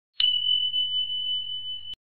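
A bell-like ding sound effect: one pure high tone struck about a fifth of a second in, held steady with a slight waver, then cut off abruptly near the end.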